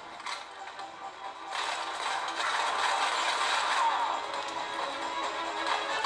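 Audio from a first-person shooter game on a phone: background music with mechanical clattering weapon sound effects, getting louder about a second and a half in.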